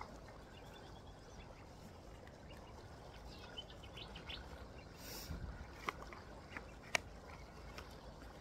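Faint outdoor ambience with distant birds calling in short chirps. A brief rustle about five seconds in, then a few sharp clicks near the end.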